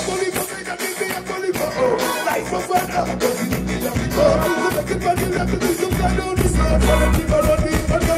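Live band music with a man singing into a microphone over drums and bass. The bass and drums grow heavier about six seconds in.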